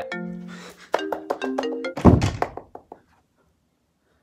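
A mobile phone's melodic ringtone playing a run of notes, ended about two seconds in by a heavy thump, after which the notes die away and the sound cuts off.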